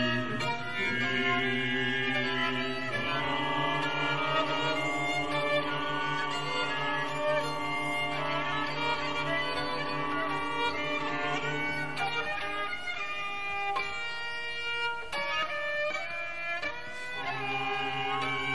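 Contemporary concert music for solo violin and chamber ensemble: long-held bowed notes layered over a sustained low note, which drops out about twelve seconds in and returns near the end.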